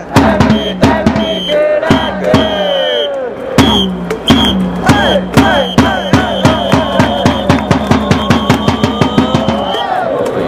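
Japanese pro-baseball cheering section of Orix Buffaloes fans chanting and shouting in unison to regular drum beats, with a high steady tone held over the top. In the second half the drum beats come faster, about four a second.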